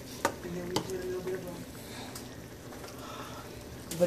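Egg and bean mixture frying in a pan with a low, steady sizzle. A metal spoon clinks against the pan twice in the first second.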